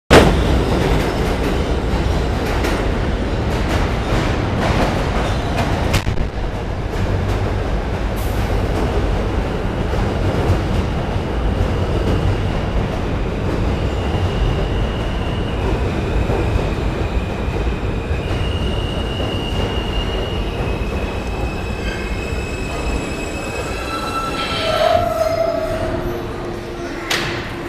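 R160 New York City subway train pulling into a station: loud rushing and rattling of the cars passing close by. As it slows, steady high tones step from one pitch to another, and a brief squeal comes near the end as it nearly stops.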